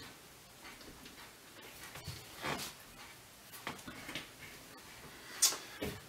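A few faint clicks and soft knocks, scattered over several seconds, from hands adjusting the small metal tripod and equatorial mount of a TAL-65 telescope.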